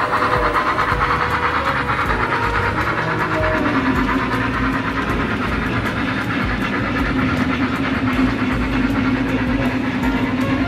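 Model freight train of hopper wagons behind a BR 86 steam locomotive model running steadily along the track, the wheels giving a continuous rolling clatter.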